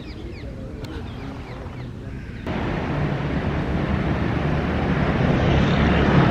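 Outdoor ambience with a low rumble and a few bird chirps at the start. About two and a half seconds in it changes suddenly to louder, steady city street noise of passing traffic.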